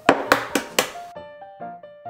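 Light piano background music. In the first second, about four quick sharp taps of an egg shell being cracked against a bowl.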